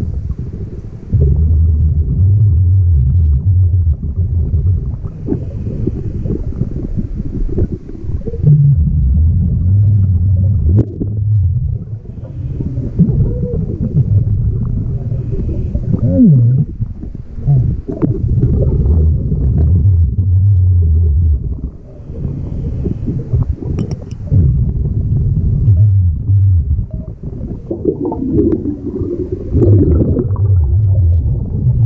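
Scuba diver breathing through a regulator underwater: exhaled bubbles rumble in long bursts every several seconds, with short, faint hissing inhalations between them.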